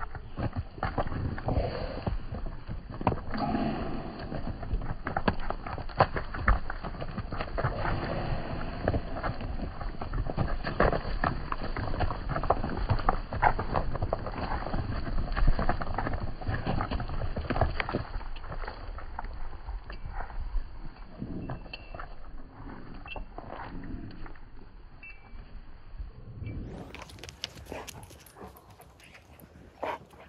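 Hooves of a flock of Zwartbles sheep running close past the microphone over a packed dirt and straw yard: dense irregular thuds and scuffs, slowed down and deepened by slow-motion playback. The running is heaviest in the first half and thins out to scattered steps in the second half.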